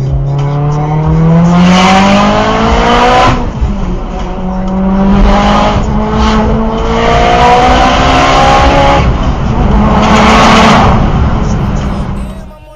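Mitsubishi Lancer Evolution X's turbocharged 2.0-litre four-cylinder engine pulling hard through the gears, its pitch climbing over each gear with short breaks at the shifts about three and six seconds in, and a loud rushing noise near the top of several pulls.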